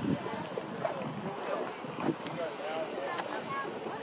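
Mud pot of thick gray mud bubbling, a rapid string of short plops and gurgles with a few sharper pops as bubbles burst at the surface.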